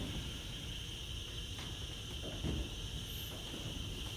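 Room tone during a pause in speech: a steady high-pitched hum over a low rumble, with a faint soft knock or two.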